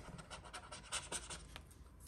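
Faint handling of a paper sticker sheet in a planner binder: soft rustling with a few light ticks.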